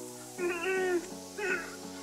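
A cat meowing twice, a longer meow and then a short one, over quiet background music.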